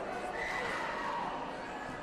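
A high-pitched human yell that rises and then falls away over about a second, over the steady chatter of a crowd in a sports hall.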